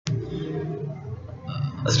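A click, then a man's low, rough voice sound that runs into speech near the end.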